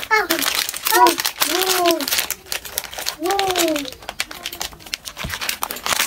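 Packaging crinkling and rustling in quick, irregular crackles as it is handled, with laughter and a voice over it.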